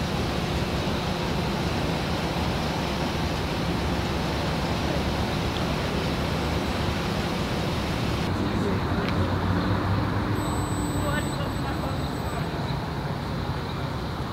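Steady street traffic noise with faint, indistinct voices.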